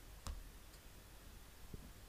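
Two faint computer mouse clicks: a sharp one about a quarter second in and a softer one near the end, over quiet room tone.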